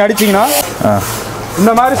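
A man speaking in short phrases.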